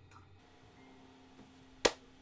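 A single sharp hand clap near the end, over a faint steady hum.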